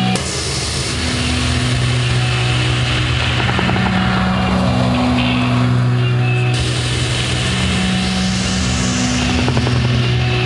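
Rock band playing live: a slow, droning passage with a steady low bass note, held guitar tones that shift every second or two, and a dense wash of distorted guitar noise.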